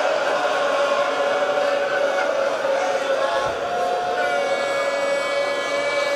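Voices chanting a Shia mourning lament (noha) in long, drawn-out held notes, with no break in the sound.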